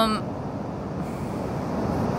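Ocean surf: a steady rush of waves breaking on the beach, building slightly toward the end.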